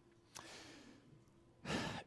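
A man breathing close to the microphone: a faint breath out, sigh-like, about half a second in, then a sharper breath in near the end, just before he speaks.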